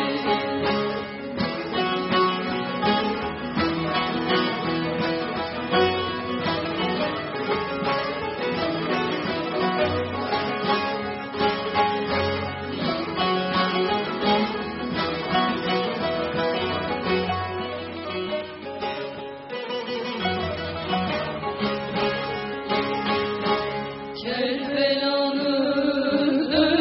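Bağlama (saz) ensemble playing an instrumental passage of a Turkish folk lament, a busy plucked melody over steady lower notes. Singing comes in near the end and the music grows louder.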